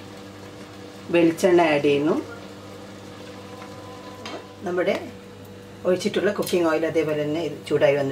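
A voice speaking in short phrases over a steady faint sizzle of oil and ghee heating in a steel pot.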